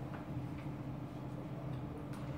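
Room tone in a lecture room: a steady low hum with a few faint, irregular ticks.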